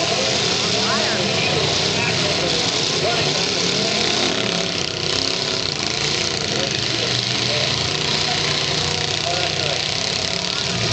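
Several demolition-derby cars' engines running and revving together, with a crowd's voices mixed in. The sound is a steady, dense din.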